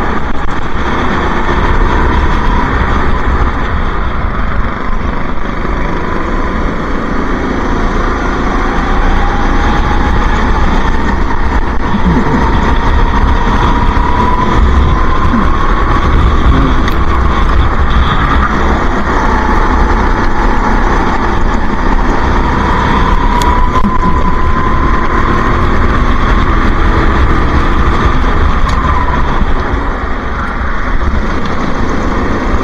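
Go-kart engine running at racing speed, its pitch rising and falling in long sweeps as the throttle is opened on the straights and eased for the corners, with a constant low rumble underneath.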